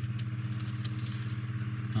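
A steady low hum, like a small motor or appliance running, with a slight fast flutter and a few faint clicks.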